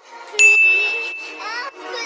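A single bright bell ding, the notification-bell sound effect, struck about half a second in and ringing out as one high tone that fades over about a second, over background music.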